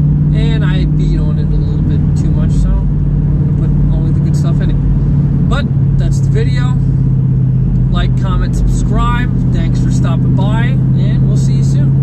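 Steady engine and road drone heard inside the cabin of a moving car, with a low hum throughout. A man's voice comes and goes over it in short stretches.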